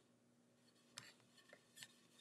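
Near silence, with a few faint soft ticks as a hand turns the top of a lazy susan.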